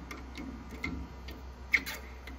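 Scattered light clicks and taps of a hand handling the hydraulic cam bearing installer's steel bar inside a Small Block Chevy's cam tunnel, the loudest near the end, over a low steady hum.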